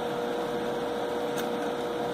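Steady room noise between words: a constant hiss with a faint, unchanging hum tone running underneath.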